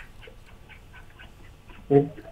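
Faint, muffled talk in the background, then a loud, steady-pitched call starts just before the end.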